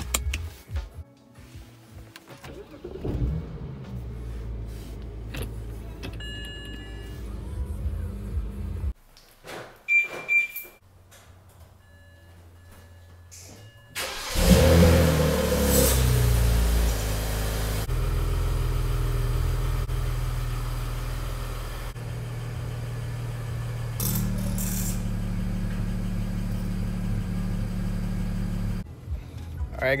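BMW 335i's N54 twin-turbo inline-six starting about halfway through, flaring up and then settling to an idle, heard under instrumental background music with a steady low bass line.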